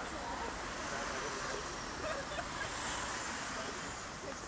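Steady street traffic noise from cars moving along a city street, with faint voices in the background.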